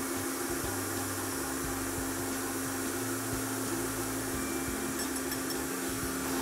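Electric stand mixer with a paddle attachment running steadily at medium speed, beating butter and sugar, with a constant motor hum.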